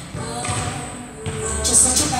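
Background music, quieter for the first second or so, then picking up again with a low bass note about a second and a half in.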